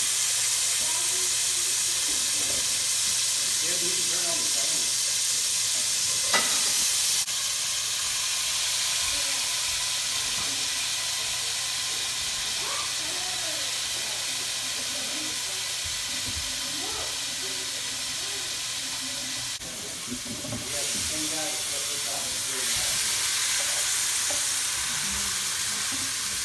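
Chopped bell peppers, mushrooms, onions and bacon sautéing in a hot frying pan: a steady sizzle that swells about six seconds in and again near the end.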